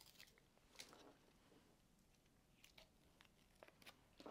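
Near silence with a soft rustle and a few faint light clicks as a thin plastic stencil is peeled off inked paper.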